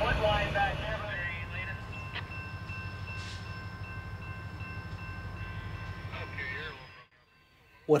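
Diesel locomotive idling in the distance: a steady low rumble with a faint steady whine over it, stopping abruptly about seven seconds in.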